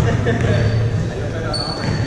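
A basketball bounces on a hardwood gym floor during play, with a brief high squeak about a second and a half in.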